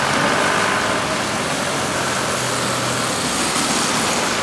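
Street traffic: vehicle engines and road noise running steadily, with a low engine hum that comes up for a couple of seconds in the middle.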